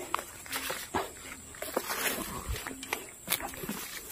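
Scattered sharp crackles and rustles, with short low calls from an animal repeating every second or so.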